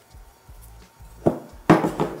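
Quiet handling of a ball of pizza dough, then a short thump near the end as the dough ball is set down on a wooden board.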